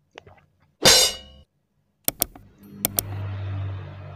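Handling noise from a white plastic washing-machine timer held right up to the microphone: a short scraping rustle about a second in, then several sharp plastic clicks and a low rumble as it is moved.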